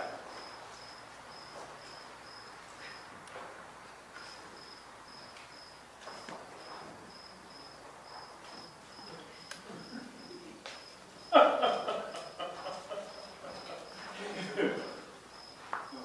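A cricket chirping steadily at a high pitch, about two and a half chirps a second, with a break of about a second three seconds in. About eleven seconds in a louder, brief burst of noise rises over it.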